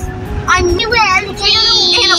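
A child singing in a high voice, breaking into a long high held note about midway, over the steady low road rumble of a moving car.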